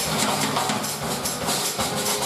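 Jazz trio of grand piano, upright bass and drum kit playing an instrumental passage, with the drums and cymbals prominent over steady low bass notes.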